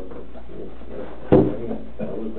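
A single sharp knock a little over a second in, over faint low voices.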